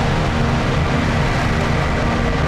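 A liquid-fuelled rocket engine in a static test firing: a loud, steady rush of exhaust noise with sustained music tones beneath it.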